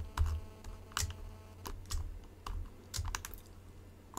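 Faint, irregular clicking of a computer mouse and keyboard being worked, a click every second or so.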